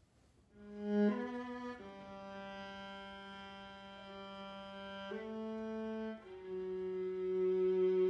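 A string quartet of two violins, viola and cello playing long sustained chords, entering softly about half a second in after near quiet. The held chord changes several times and grows louder toward the end.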